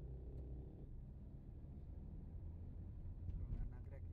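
Low, steady rumble of a car's engine and tyres heard from inside the cabin while driving slowly in traffic, with a brief faint higher sound about three and a half seconds in.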